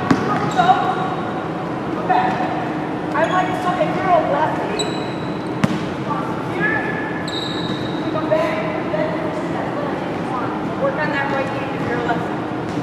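Basketball bouncing on a hardwood gym floor, a few sharp bounces echoing in a large hall, with people talking. Two short high squeaks come about five and seven seconds in.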